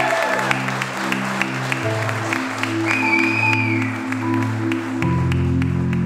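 Guests clapping, a crowd's scattered hand claps, over music of slow sustained chords that change about two seconds in and again near the end.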